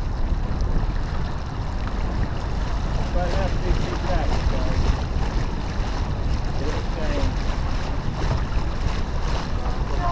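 Steady wind buffeting the microphone and water rushing along the hull of a T-10 sailboat moving under sail, with faint voices now and then.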